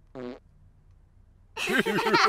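Computer-game sound effect: a short, low, buzzy pop as a cartoon chicken lays an egg and scores a point. About a second and a half later, children start laughing loudly.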